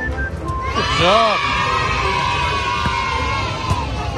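Voices cheering in one long shout that rises about a second in and holds for nearly three seconds, over fairground music and crowd noise, in reaction to a shot at a carnival basketball game.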